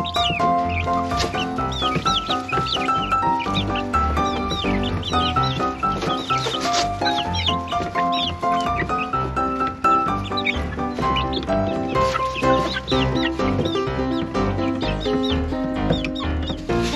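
Background music with a melody and a low beat, over young chickens in a flock making many short, high calls throughout.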